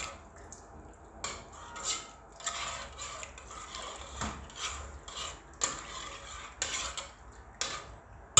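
Spoon stirring tomato paste into broth in a stainless steel pot, knocking and scraping against the pot's side and bottom about once or twice a second.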